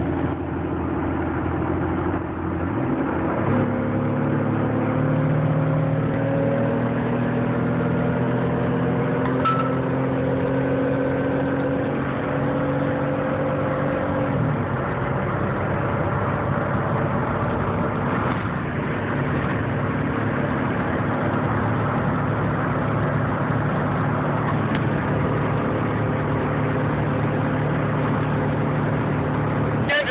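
A 1998 Pontiac Bonneville's 3.8-litre V6 heard from inside the cabin while driving. After a change a few seconds in, the engine note climbs steadily in pitch for about ten seconds as the car accelerates, then drops suddenly with an upshift and runs on steadily.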